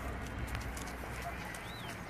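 Footsteps and paws on gravelly dirt, light scattered crunches, with one short rising-and-falling chirp near the end.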